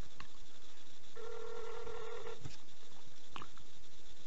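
Telephone ringback tone heard from a phone held up to the microphone: one steady ring just over a second long, with a few sharp clicks around it. The line is ringing while the call waits to be answered.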